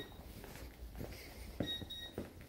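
Footsteps on a laminate wood-look floor, about two steps a second. A brief faint high beep sounds at the start and again near the end.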